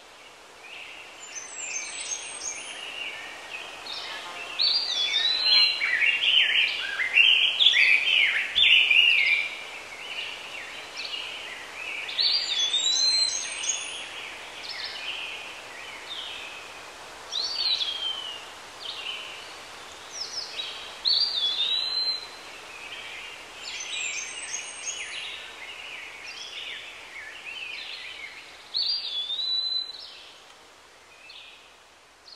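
Songbirds singing: a busy run of varied chirps and short whistled phrases in the first third, then single phrases every few seconds, over a faint steady outdoor hiss.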